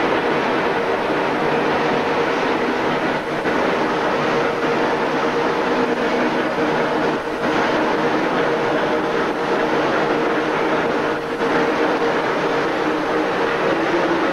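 Mill power-drive machinery running: toothed gearing and line shafting turning, giving a steady, loud mechanical din with a constant hum underneath.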